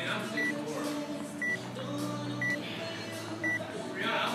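Electronic workout timer giving four short, high beeps about one a second as it counts down.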